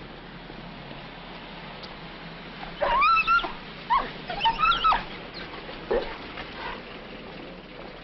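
A dog whining and yelping in a run of short, high-pitched cries that rise and fall, starting about three seconds in, with a last fainter one a little before six seconds.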